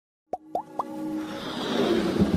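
Electronic intro jingle for an animated logo: three quick rising pops about a quarter second apart, starting about a third of a second in, then a swelling whoosh that builds over a held synth tone.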